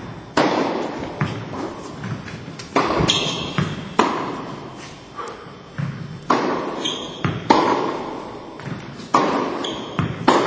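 Tennis ball hit by a racket and bouncing on an indoor court, with a sharp crack every second or two and a long echo fading after each in the hall. Softer knocks fall between the hits, and a few brief high squeaks come near the middle and end.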